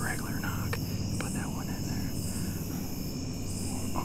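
A man whispering quietly close to the microphone, with two soft clicks about a second in.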